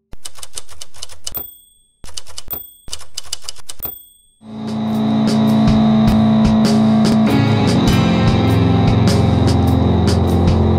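Typewriter keys clacking rapidly, each run ending with a ding of the carriage-return bell, three times in quick succession. About four and a half seconds in, music with a low sustained note swells in under continuing clicks.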